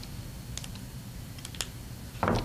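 Light clicks of pens being handled on a tabletop close to a microphone, in two quick clusters about a second apart, over quiet room tone.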